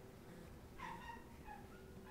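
A marker squeaking in short, faint strokes as it writes on flip-chart paper, a couple of squeaks about a second in and again a moment later.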